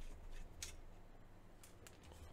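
A few faint clicks of a small Phillips screwdriver working the single screw out of a graphics-card fan's hub.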